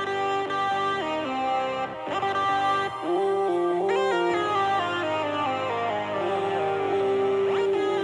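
Instrumental music led by a guitar-like melody with no vocals, the notes moving in steps, with two rising sweeps, about halfway through and near the end.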